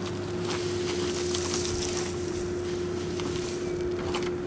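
Dry straw rustling and crackling as armfuls are pulled from a pickup bed and tossed onto a compost pile, over a steady machine hum.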